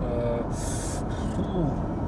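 Steady road and wind noise inside the cabin of a 2014 Ford Mondeo wagon cruising at motorway speed, mostly tyre rumble and some wind from the mirrors. A short hiss comes about half a second in.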